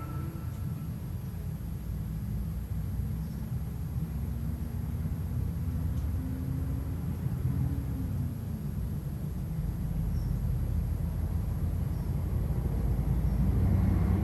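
A low, steady rumbling drone from the film's soundtrack, slowly growing louder toward the end, with a faint wavering tone above it in the middle. The last notes of the preceding music die away in the first second.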